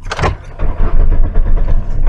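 A 1995 Ford Escort's starter cranking the engine, a steady low rumble from about half a second in, without the engine catching: the car is reluctant to start.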